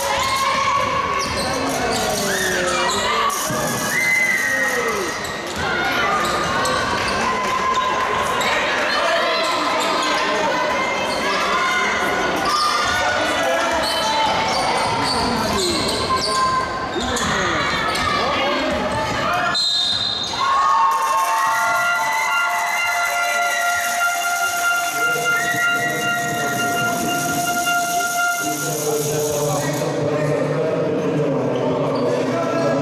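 Basketball game in an echoing sports hall: the ball bouncing on the wooden court, with players' shouts. About two-thirds through, a short high whistle sounds, followed by several steady held tones.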